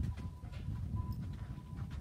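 Footsteps on concrete paving slabs with a low rumble on the phone's microphone.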